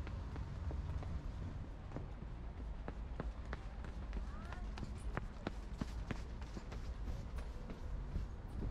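Street ambience: a steady low rumble with many irregular sharp clicks, like footsteps on pavement, and faint voices of people in the street.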